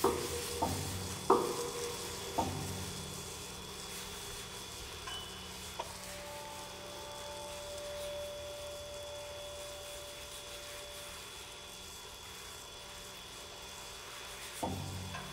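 Experimental piano-and-percussion music with Foley sounds: four sharp struck notes with ringing decay in the first few seconds, then quiet held tones over a steady crackling hiss.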